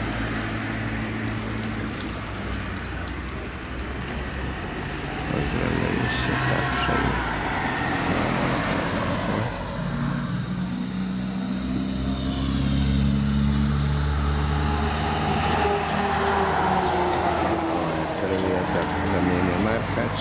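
A large engine running steadily, its pitch slowly rising and falling, with voices underneath.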